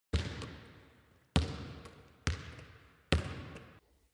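A basketball bouncing on a hard floor four times at uneven intervals, each bounce ringing out briefly with a small rebound tap after it.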